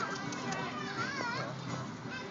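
A child's high voice, calling out without clear words, rising and falling in pitch twice, near the start and about a second in.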